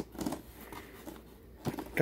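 Faint handling of a cardboard toy box, a soft rustle as it is turned in the hand, over a low steady room hum.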